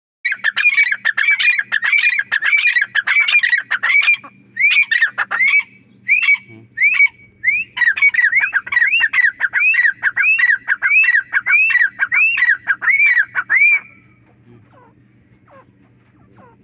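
Caged teetar (grey francolin) calling: a loud, fast run of short arched notes, about two to three a second, thinning into scattered notes between about four and seven seconds in, then picking up again before stopping near the end.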